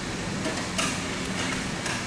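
A steady background hum like ventilation or machinery in the room, with a few faint taps or clicks around the middle.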